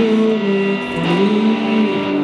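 Live band music in an instrumental passage between sung lines, led by electric guitar. Held notes change pitch about a second in.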